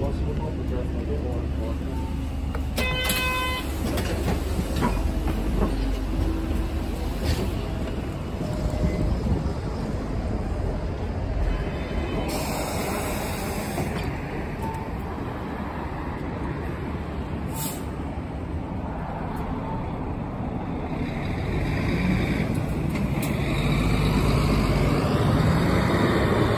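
A city bus's engine running at a stop, with a short electronic beep about three seconds in and brief hissing bursts in the middle, then the engine note rising as the bus pulls away near the end.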